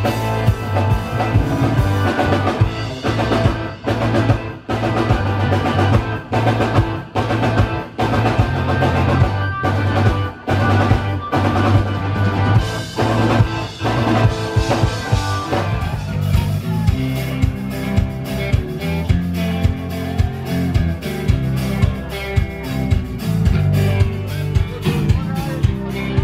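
A live rock band playing loud, drum-heavy music. Stop-start hits and drum fills come first, then the band settles into a steady, even beat about halfway through.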